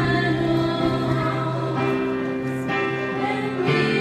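Two women singing a Christian hymn in Spanish into microphones over a sustained instrumental accompaniment, its held chords changing every couple of seconds.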